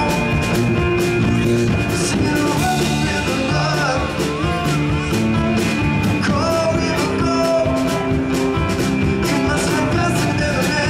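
Live band playing: accordion, guitars and a drum kit, with a steady beat.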